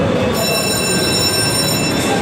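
Amusement-park ride car rolling along its track, a steady loud rumble joined about a third of a second in by a high, steady wheel squeal.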